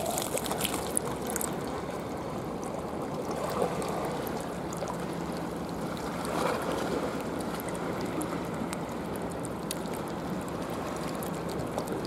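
Steady wash of seawater at a rocky shore, with light trickling and faint ticks, swelling gently a couple of times.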